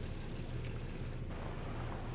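Steady hiss of spring water running into a stone pool. A little over a second in it breaks off into duller outdoor room tone with a faint, steady high whine.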